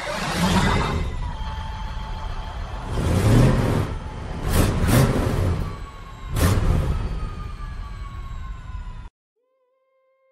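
Logo intro sting of sweeping whooshes and deep booms, with faint falling tones. Big swells come about three, four and a half, five and six and a half seconds in. It cuts off suddenly about nine seconds in.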